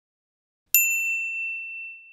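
A single bright 'ding' sound effect with one high ringing tone, coming in sharply about three-quarters of a second in and fading over about a second. It is the kind of chime that marks a box being ticked or an item confirmed.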